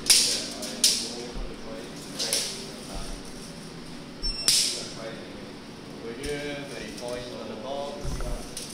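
A steel tape measure's blade being pulled out and run along, in four short zipping hisses over the first five seconds, the last with a faint metallic ring.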